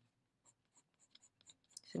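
Coloured pencil scratching over textured watercolour paper in short, faint strokes. The strokes begin about half a second in and come quicker toward the end.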